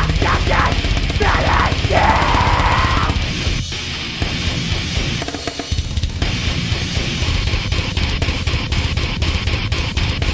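Heavy metal backing track with drums and guitar. Harsh screamed vocals run over the first three seconds and end on a long held scream. The instrumental then carries on alone, the low end drops out briefly around five seconds in, and the drums come back with fast, even hits.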